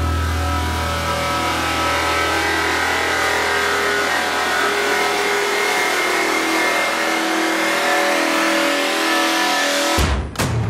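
Electronic psytrance intro with sustained synth chords under a sweeping noise riser that builds steadily. A deep bass drone drops out about seven seconds in, leaving the build to rise towards the beat.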